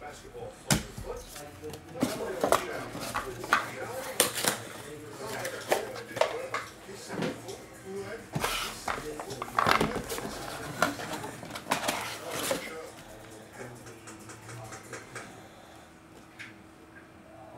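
Hard plastic graded-card slabs and small cardboard card boxes being handled on a table: a string of irregular clicks, taps and short scrapes that dies down after about twelve seconds.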